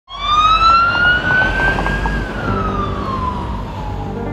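An emergency vehicle siren wailing: one long tone that rises for about two seconds and then falls, over a low rumble. Soft held music notes come in about halfway.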